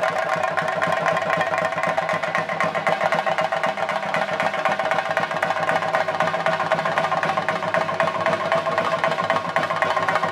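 Fast, continuous drumming with steady ringing tones held over it, with no break.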